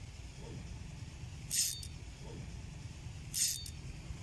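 Two short, bright metallic clinking bursts from a spinning fishing reel, a little under two seconds apart, over a steady low rumble.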